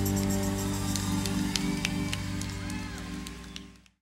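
A live band's closing chord ringing out after the final hit, its low sustained tones slowly dying away, with a few scattered sharp clicks over it; it fades out to silence near the end.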